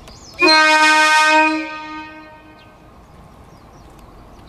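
Train horn sounding one steady blast of about a second, its sound trailing away over the following second.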